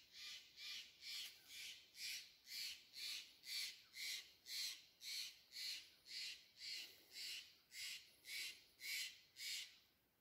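Regular swishing, about two a second, from a person walking through brushy forest undergrowth: footfalls and clothing or brush rubbing with each stride.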